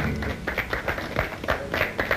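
Audience applauding at the end of a piano-and-vocal song: many sharp, irregular hand claps.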